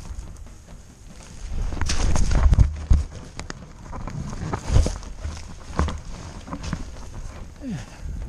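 Footsteps and rustling through dry marsh reeds, with the camera rubbing and knocking against the stalks. A loud stretch of rubbing comes about two seconds in, followed by several sharp knocks.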